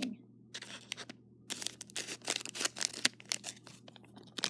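A plastic LEGO blind-bag packet crinkling and rustling as it is handled and opened. There are a few faint ticks at first, then a dense run of crackles from about a second and a half in.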